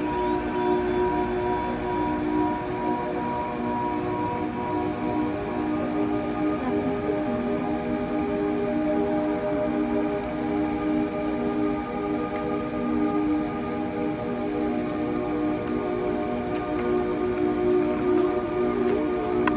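Ambient music of long held chords, the chord shifting about five or six seconds in, over a steady background hiss.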